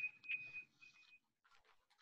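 Faint video-call line noise: a thin, steady high tone dies out about a second in, with a small click along the way, then near silence with faint scattered ticks.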